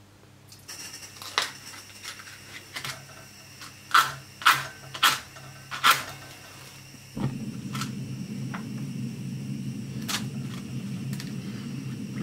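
A few sharp clicks and taps, then about seven seconds in a camping gas stove on a Campingaz cartridge lights and burns with a steady low rush of gas flame.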